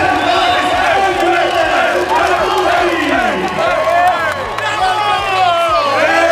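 A group of men talking and shouting over one another as a team celebrates a win in a huddle, with a crowd behind.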